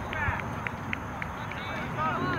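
Distant shouting from players and spectators across an open soccer field: short calls and yells over steady outdoor background noise.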